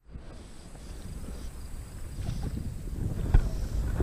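Wind rumbling on the microphone in a small boat on open water, with a single sharp knock about three seconds in.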